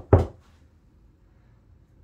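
Two quick thumps a quarter second apart at the start, from the storage ottoman being tapped or pressed as he sits on it, then quiet room tone.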